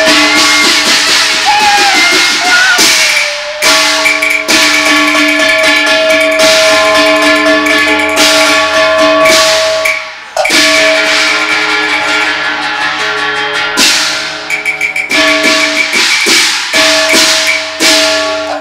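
Cantonese opera instrumental ensemble playing: held melodic notes over loud crashing percussion that comes in sections, breaking off briefly twice.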